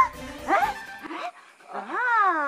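Short yelping, dog-like cries that rise sharply in pitch, twice, over background music.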